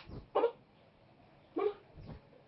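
Two short, dog-like barks about a second apart, each dropping in pitch.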